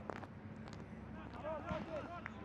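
Footballers' faint shouts on the pitch in a near-empty stadium, with no crowd noise, and a few light sharp knocks.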